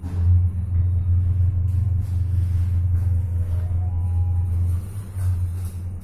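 Hyundai freight elevator car running down one floor: a loud, steady low hum from the moving car that rises sharply as the ride gets under way and eases about five seconds in as the car slows for the stop. A faint series of short tones rising in pitch comes about three and a half seconds in.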